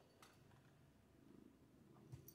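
Faint purring of a domestic cat close to the microphone, with one faint click about a quarter second in.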